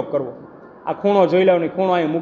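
A man speaking, lecturing in Gujarati, with a short pause near the start.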